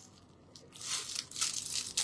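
Crinkling and rustling of a clear plastic packet being handled, starting a little under a second in as irregular rustles.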